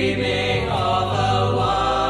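A group of teenage boys singing a part song together in harmony, holding long sustained chords.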